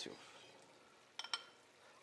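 Two quick clinks of a serving spoon against the dishes a little over a second in, as cooked vegetables are scooped out of a pan into a small glass bowl.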